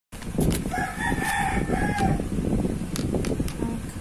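A rooster crowing once, one long held call starting about a second in, over steady background noise.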